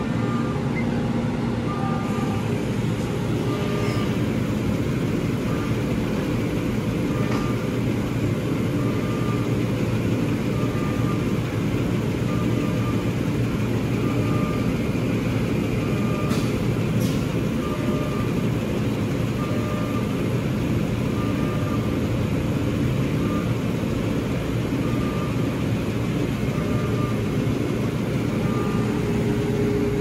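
Epilog Fusion laser engraver running an engraving job: a steady blower drone with a short, faint whine repeating about every second and a half to two seconds as the machine works.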